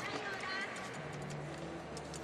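Arena ambience during a gymnastics bars routine: a low crowd murmur, with a few short high-pitched voices calling out from the stands about half a second in.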